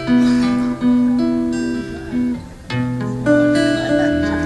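A live blues band playing an instrumental passage led by a strummed acoustic guitar, with chords struck anew every second or so over a held bass note.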